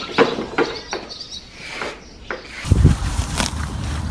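A series of short knocks and scuffs about every half second, then from near three seconds in a steady low rumble of wind on the microphone.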